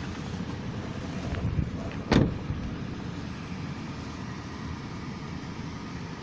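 One solid thump about two seconds in: the Toyota 4Runner's rear liftgate being shut. A steady low rumble runs underneath.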